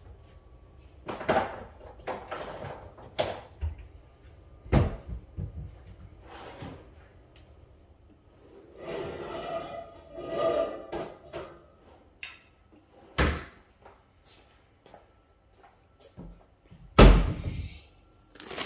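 Kitchen cabinet doors and drawers being shut while things are put away: about five sharp knocks and thuds spread out, the loudest near the end, with a stretch of rustling in the middle.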